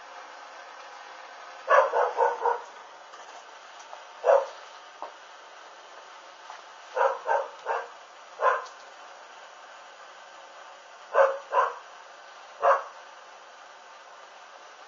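A dog barking in short bursts: four quick barks about two seconds in, a single bark past four seconds, four more around seven to eight seconds, and three near the end.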